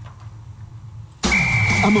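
A faint low hum, then just over a second in a sudden loud sound effect with a steady high beep held to the end, marking a break between bulletin items.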